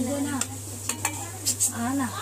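Hot oil sizzling and crackling as potato cheese balls deep-fry, with several sharp pops and a few light utensil clinks over a steady low hum.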